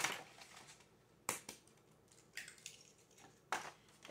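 Eggshells being cracked and handled over a mixing bowl: a few short, sharp cracks and clicks about a second apart.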